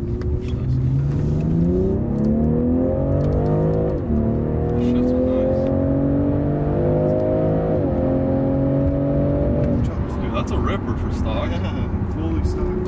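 BMW M340i's turbocharged inline-six engine accelerating hard, heard from inside the cabin: the engine note climbs in pitch, drops sharply at an upshift about 4 seconds in, climbs again, drops at a second upshift near 8 seconds, then holds before the driver lifts off near 10 seconds.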